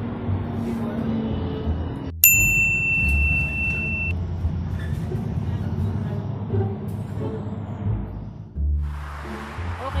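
Steady low rumble of a city bus running, heard from inside. About two seconds in, a single bright ding rings out and fades over nearly two seconds.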